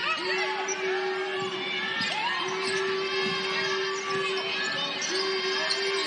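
Basketball dribbling on a hardwood court amid arena crowd noise during live play.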